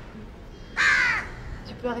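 A crow caws once, a single harsh, downward-bending call about half a second long, a little under a second in.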